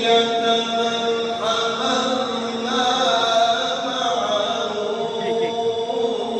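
A voice chanting in long, held melodic notes, Islamic recitation carrying through the mosque hall.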